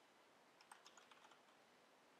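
Faint typing on a Corsair K70 RGB mechanical computer keyboard: a short run of key clicks a little under a second in as a word is typed.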